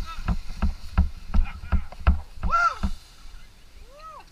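A tandem skydiving pair's landing slide on grass: a quick run of thumps and scuffs, about three a second, as the harnessed bodies and gear bump and skid to a stop. A short rising-and-falling shout comes near the end.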